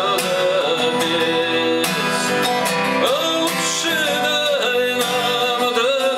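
A man singing a Russian rock song over a strummed acoustic guitar.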